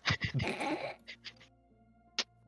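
A person laughing in short breathy bursts for about the first second, then faint background music with held tones.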